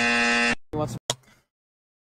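Electronic lie-detector buzzer sound effect, one flat buzz that cuts off about half a second in, marking the answer as a lie. Two short blips follow, then silence.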